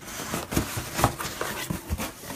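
Cardboard mailer box being handled and opened: rustling and scraping of cardboard broken by a few sharp knocks.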